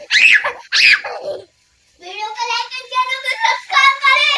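A little girl laughing out loud in excited bursts, then, after a brief break, a child's voice talking in drawn-out tones.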